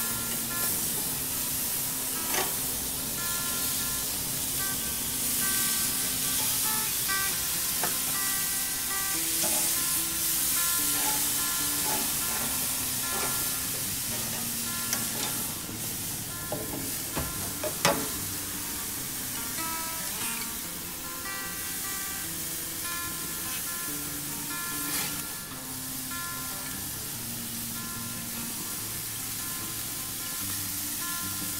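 Pork barbecue slices sizzling on a grill under background music, with a few sharp clicks.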